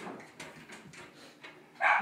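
A pet dog whimpering faintly, with a few small clicks.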